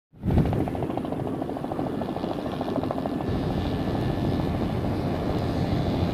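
Helicopter rotor beating at about a dozen blade beats a second, clearest in the first few seconds, over a steady rush of wind and water.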